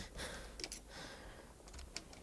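Faint handling noise with a few light clicks as a cinema camera is held and shifted on its tilting drone camera mount, in a quiet small room.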